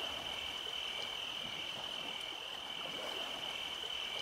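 A steady, high-pitched chorus of chirring insects, with a lower chirp repeating about every half second.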